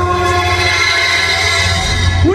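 Loud sustained electronic synth chord of several held notes over a heavy steady bass, played through a festival sound system in the intro of a hardstyle track.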